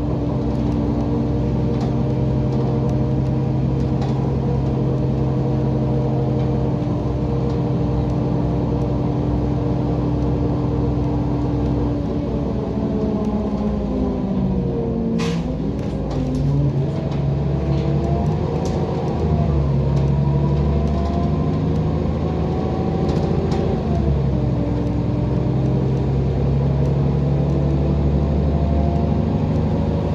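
Heuliez GX127 city bus's diesel engine and drivetrain heard from inside while driving: a steady running hum that drops in pitch about halfway through as the bus slows, with a single click at the low point. The hum then rises and shifts again as the bus picks up speed.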